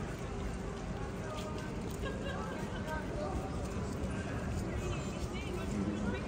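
Pedestrian street ambience: passers-by talking, footsteps on paving and a steady low hum of the town.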